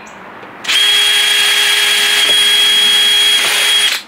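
DeWalt cordless drill with a quarter-inch bit boring through PVC pipe. It starts about a second in, runs as a steady whine at even speed for about three seconds, then stops abruptly.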